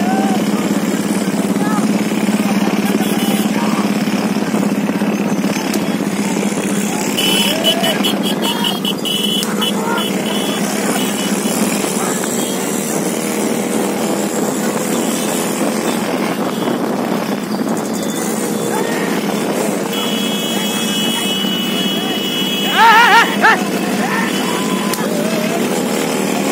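Several motorcycles running together at steady riding speed, their engines a continuous hum, with people's voices over them. Near the end comes a short burst of loud, high calls.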